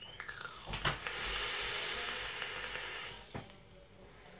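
A vape mod being drawn on: a steady hiss of air and vapour pulled through the atomiser for about two seconds, ending with a short click.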